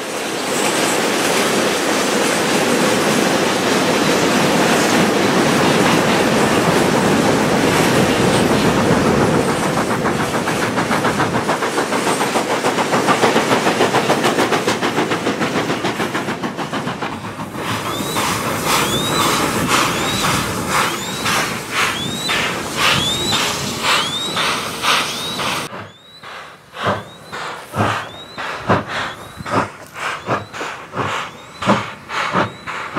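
Long train of loaded coal wagons rolling past: a dense, continuous rumble and clatter of wheels on the rails. From about 18 s it turns into a rhythmic clickety-clack of wheels over rail joints, each clack carrying a short squeal. Near the end the sound drops and gives way to sharp, irregular knocks around the steam locomotive.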